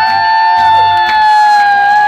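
Brass band trumpets holding one long, loud note, with a second held note in harmony, each scooped up into at the start.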